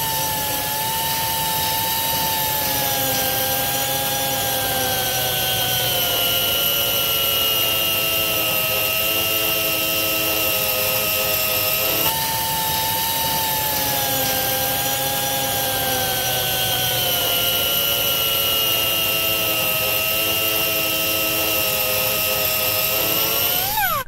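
Pneumatic angle grinder with a tungsten-alloy milling disc cutting metal: a loud, steady high whine that sinks slowly in pitch as the disc bites and the tool comes under load. About halfway through it jumps back up to a high pitch and sinks again.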